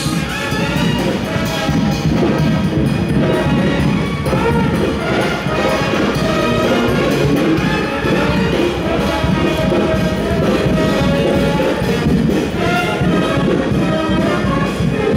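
A high school brass band playing live, loud and without a break.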